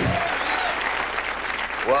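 Studio audience applauding, with a few whoops, right after a music sting cuts off at the start.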